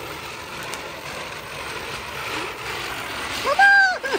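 A fountain firework (anar) hissing steadily as it burns. Near the end a high-pitched voice cries out once, for about half a second, and this is the loudest sound.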